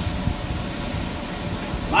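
Ground wild hog patties frying in a skillet on a gas stove, a steady hiss.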